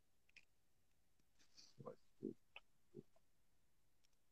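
Near silence on a livestream's audio, with four or five faint, brief sounds about two to three seconds in.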